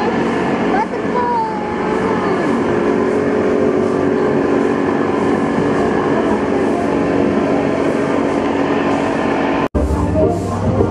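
A steady machine drone, with people's voices over it; it drops out abruptly for an instant near the end.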